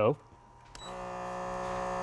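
A click as the power button of a MicrodermMD diamond-tip microdermabrasion machine is pressed, then a steady pitched electric hum from the machine switching on, growing a little louder over the last second.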